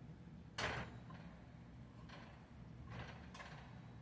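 Kitchen handling sounds at a stove: one sharp knock about half a second in, then three fainter clicks and clatters over the next few seconds.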